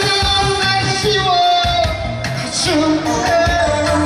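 A male singer singing live into a handheld microphone over a pop backing track with a steady beat, holding long notes.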